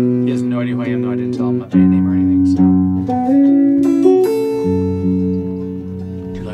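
Music: acoustic guitar playing slow sustained chords that change about every second, with a voice in the first second or so.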